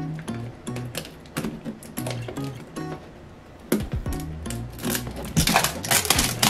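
Background music with a steady bass line, over which the cellophane wrap and cardboard of a toy box crackle and click as it is unwrapped, getting louder and busier in the second half.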